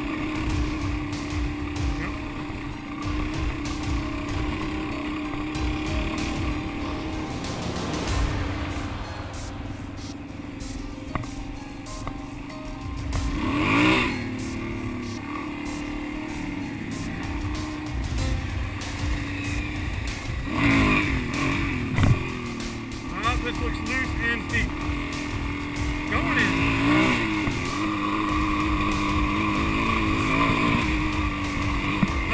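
Suzuki DR-Z400 single-cylinder four-stroke engine running under way, its revs rising and falling a few times: about halfway in, around two-thirds in and near the end. Wind buffets the microphone throughout.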